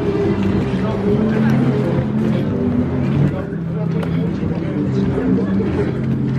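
Group of people chatting while walking, over a steady low engine hum.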